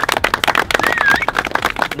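A small group of people applauding, many hand claps in a quick, uneven patter.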